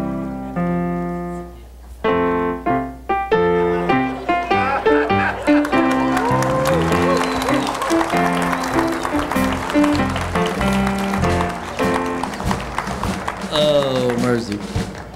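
Keyboard chords played as stage music, held and changing in steps. About four seconds in, audience applause joins under the music and carries on.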